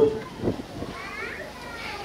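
Background voices during a pause in the main speaker: a brief voice burst at the start, then faint, higher-pitched chatter typical of children's voices.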